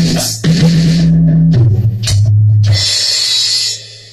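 Drums played on an electronic drum kit over music with a low bass line, finishing with a cymbal crash near the end.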